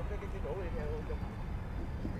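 Faint voices of footballers talking on the training pitch, heard at a distance over a steady low outdoor rumble.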